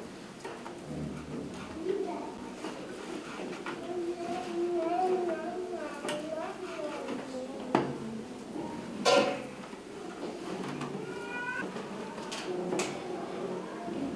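Women's voices talking indistinctly in a small room, with scattered sharp knocks and clicks from hand weaving at a vertical kilim loom. The two loudest knocks come a little past the middle.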